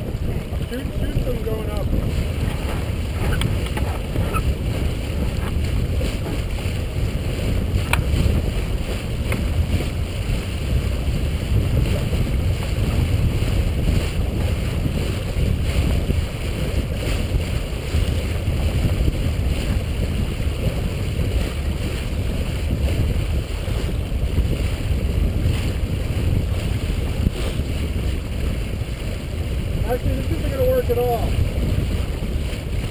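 Wind buffeting the camera microphone over water rushing past the hull of a C&C 34/36 sailing yacht under way: a steady rumbling noise. A single sharp click about eight seconds in.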